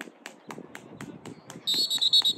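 Referee's whistle: a single steady high blast starting near the end and lasting about a second. Under it, even knocks at about four a second.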